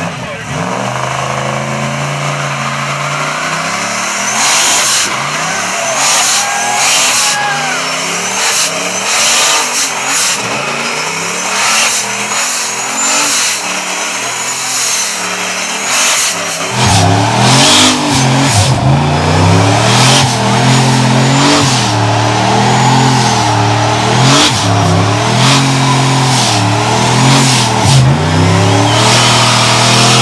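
Single-turbocharged Pontiac Trans Am engine revving hard through a burnout, its pitch swinging up and down over and over as the rear tyres spin. The engine gets clearly louder about halfway through.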